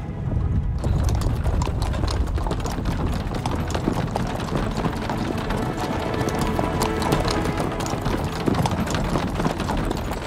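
Hooves of several horses clopping steadily on a dirt road, starting about a second in, with background music underneath.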